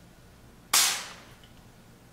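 Short burst of aerosol hiss from a can of Great Stuff polyurethane expanding foam spraying through its straw. It starts suddenly about two-thirds of a second in and fades within half a second.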